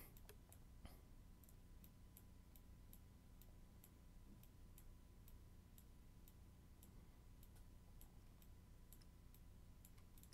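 Near silence: faint computer mouse clicks, two or three a second, over a faint steady hum.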